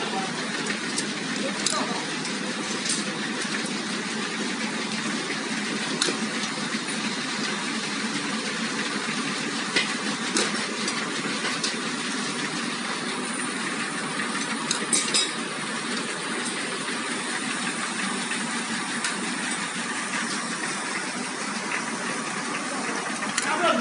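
Automatic waffle cone making machine running: a steady mechanical noise with sharp clicks at irregular moments.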